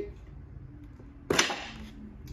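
Spring-loaded catch in an early 19th-century mahogany writing slope letting go with one sharp click a little over a second in, as the hidden button releases the fascia board that covers the secret drawers.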